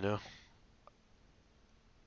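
A man's voice saying one word, then near-silent room tone with one faint, short click just under a second in.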